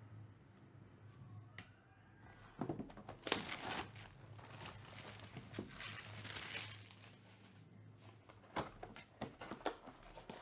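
Plastic shrink-wrap being torn and crumpled off a trading-card hobby box, crinkling for several seconds. Near the end come a few sharp clicks and taps as the cardboard box is opened.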